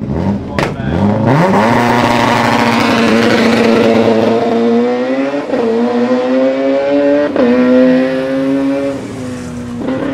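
Ford Escort Mk2's 2.0-litre 16-valve naturally aspirated inline-four, breathing through individual throttle bodies, driven hard away from the start line. The revs climb quickly and then hold high and steady in a screaming intake note. Two upshifts follow, about five and a half and seven and a half seconds in, each a brief dip in pitch before it climbs again, and the sound fades near the end as the car pulls away.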